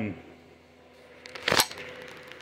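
A short burst of clicking and knocking about a second and a half in, from the camera being handled and moved, over a faint steady hum.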